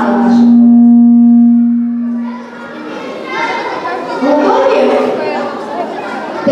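A loud, steady pitched tone held for about two seconds and then fading out, followed by several voices talking in a hall.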